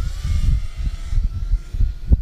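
Faint whine of an FPV racing quad's motors, drifting slowly in pitch, under an irregular low rumble of wind on the microphone.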